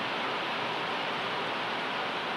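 Heavy rain from a thunderstorm falling steadily, an even hiss without breaks.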